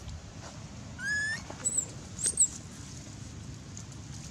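Baby long-tailed macaque crying: a rising, whistle-like squeal about a second in, then two short, very high-pitched shrieks, the last one the loudest.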